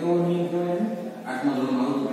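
A man's voice drawing out long, level syllables in a sing-song, chant-like way, a few held notes in a row.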